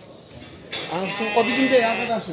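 A sheep bleating: one long, wavering bleat that starts suddenly under a second in.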